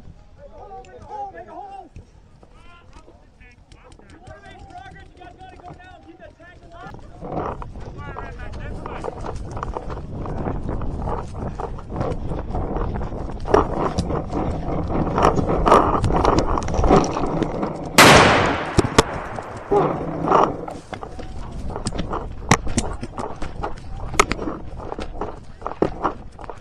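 Many paintball markers firing in dense, rapid volleys of pops across the field, starting about a quarter of the way in after a stretch of distant voices. One loud blast stands out about two-thirds of the way through.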